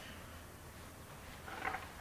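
Quiet room tone with a low steady hum, and one brief soft sound about one and a half seconds in.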